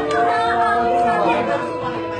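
Several people chattering over background music with steady held notes.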